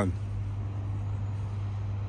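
Steady low hum of road traffic with a faint even background noise.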